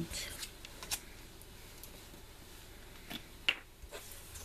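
Light rustling of paper cut-outs and a few small clicks and taps from handling them and a small plastic glue bottle on a cutting mat; the sharpest tick comes about three and a half seconds in.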